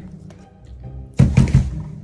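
Heavy knocking on a door, a quick series of low thuds about a second in, over soft background music.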